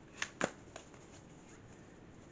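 Tarot cards being handled: three short card snaps in the first second, the middle one loudest.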